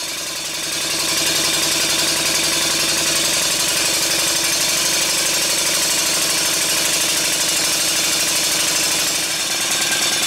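Stuart 5A vertical model steam engine running fast on compressed air, with a rapid, even exhaust and mechanical beat. It picks up speed over the first second after the flywheel is spun by hand, then holds steady.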